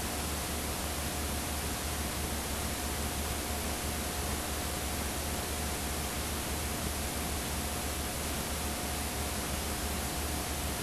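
Steady hiss of videotape playback noise from a blank stretch of tape, with a low hum underneath and a faint steady whine.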